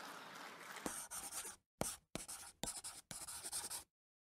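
Scratchy brush-stroke sound effect of an animated logo: faint hiss, then about five quick scratching strokes with short gaps between them. It cuts off suddenly just before the end.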